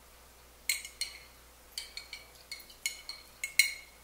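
A metal utensil clinking against the inside of a small glass jar as food is scooped out: a run of about ten sharp, bright clinks, irregular at roughly three a second, starting under a second in.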